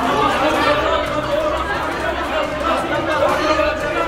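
Several people talking loudly over each other at once, an agitated jumble of voices in a scuffle.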